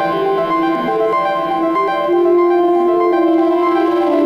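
Aud Calc, an RP2040-based pocket synthesizer and sequencer, playing a sequenced melody of short stepping notes over sustained tones; about halfway through, one note is held to the end.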